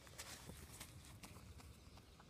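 Faint, quick footsteps of a goalkeeper running on grass: a run of light, irregular taps about three a second.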